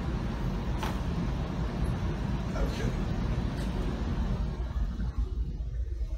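A steady low rumbling noise with a few short, sharp cracks, the first about a second in: a chiropractic neck adjustment, the cervical joints popping as the head is set.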